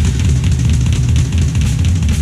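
Drum kit played fast and hard: a dense, unbroken stream of bass drum strokes under quick snare and cymbal hits.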